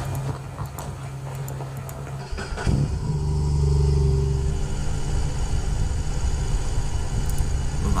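Cruiser motorcycle engine running, steady at first, then getting louder and heavier about two and a half seconds in and holding there.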